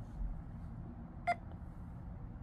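A single short electronic beep from a smartphone's Florida Lottery app a little past halfway, as it reads a scratch-off ticket's barcode, over faint low room hum.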